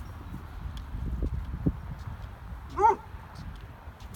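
Treeing Walker Coonhound barking at a rabbit: one short, pitched bark near the end. Before it come soft low thumps and rustling.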